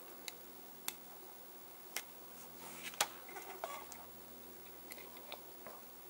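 Faint, sharp clicks and ticks, a handful spread over a few seconds with the loudest about three seconds in, from a thin metal axle tool working against the axles and wheels of a small die-cast Hot Wheels Redline car as its bent axles are levered straight.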